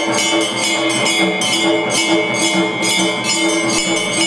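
Temple puja music during the lamp offering: bright metallic percussion struck in a steady beat, about three strokes a second, over steady ringing tones.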